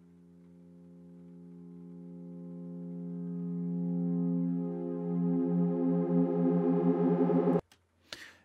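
Serum software-synth tension pad holding one chord: it swells up from quiet and grows brighter as its filter opens, while its detuned unison voices start to waver and beat against each other, going out of tune to build tension. The chord cuts off abruptly near the end.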